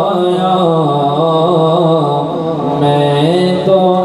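A man's solo voice chanting a devotional recitation unaccompanied into a microphone, in long held notes that bend and ornament. The line sinks lower in the middle and climbs back up about three seconds in.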